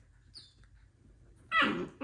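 F1b goldendoodle puppy giving a short, loud whine about one and a half seconds in, after a mostly quiet stretch with a faint high squeak early on.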